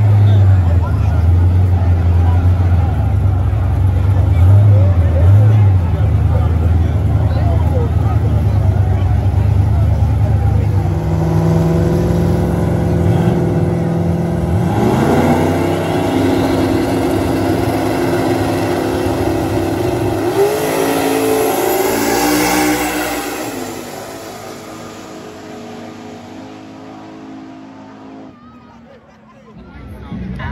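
Big-rim donk drag cars' engines running hard in tyre smoke at the starting line, then revving up and launching. The engine note rises, holds, shifts again about three quarters of the way through, and fades as the cars pull away down the strip.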